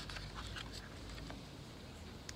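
Faint paper rustles and a few light taps as a picture book's page is turned and the book is settled, mostly in the first second, over a low rumble.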